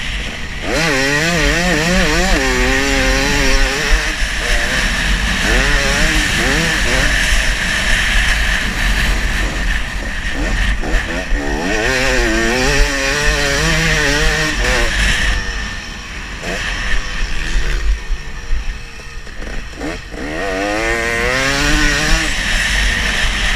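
Motocross dirt bike engine under hard riding, its revs repeatedly climbing and dropping as it accelerates and shifts, easing off twice in the second half. Wind rushes over the bike-mounted camera's microphone.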